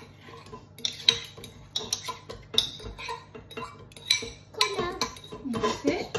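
Metal fork scraping and clinking against a ceramic bowl as mashed banana is pushed out into a stainless steel mixing bowl: a run of irregular sharp clinks, several a second.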